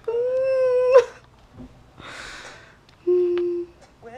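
A young woman's wordless vocalising: a held note about a second long, a breath, then a shorter, lower hummed note near the end.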